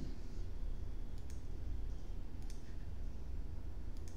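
Computer mouse clicking a few times: a close pair about a second in, one near the middle and one near the end, over a low steady hum.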